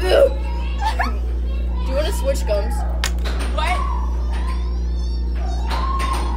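Indistinct voices of young people talking, over a steady low hum, with a sharp click about three seconds in.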